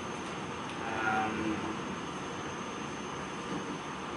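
Steady room noise from air conditioning, with a thin constant high whine over it. A brief faint voice murmurs about a second in.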